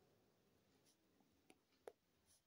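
Near silence with a pen writing faintly on notebook paper, two soft ticks of the pen against the page near the end.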